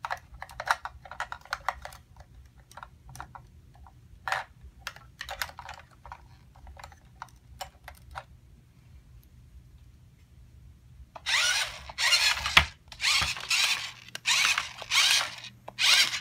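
Light plastic clicks and taps as toy figures are set into a plastic toy car, then from about eleven seconds a run of short, loud whirring bursts from the remote-control toy car's electric drive motor as it is driven in stops and starts.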